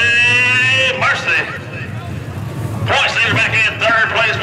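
Speech: a man talking, with a steady low hum underneath.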